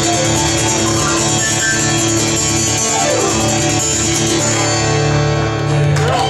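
Live acoustic guitar playing with a keyboard, the song drawing to its close near the end.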